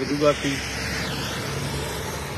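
Steady traffic noise of cars running on a rain-soaked highway, tyres hissing on the wet road, with one vehicle passing close by about a second in.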